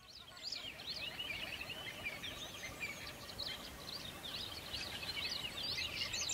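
A dense chorus of many small birds chirping, with short, high, overlapping chirps throughout over steady background noise.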